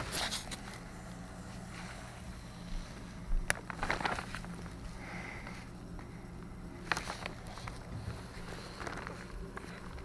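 Scattered rustling and scraping of a person crawling over plastic vapor-barrier sheeting, the strongest about three and a half to four seconds in, over a steady low hum.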